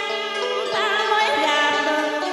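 Backing music in Vietnamese traditional style: plucked string instruments playing a melody of sliding, bent notes over a held low note.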